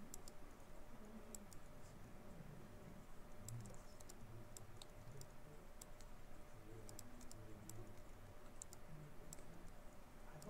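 Faint, irregular clicking of a computer keyboard and mouse, about two light clicks a second, over quiet room tone.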